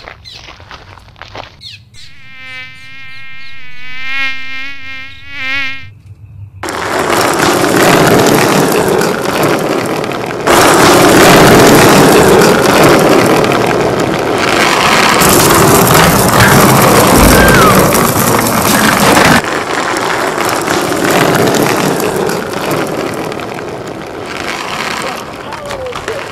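A wavering buzz that swells in loudness for a few seconds, then gives way to a loud, dense buzzing din that runs on with a couple of abrupt jumps in level.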